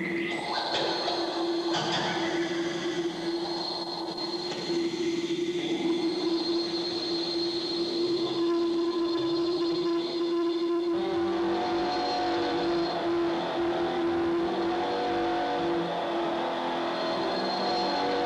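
Experimental electronic music played live: a steady held drone tone under dense hiss and layered sustained tones, the texture shifting with new higher tones and more low rumble about eleven seconds in.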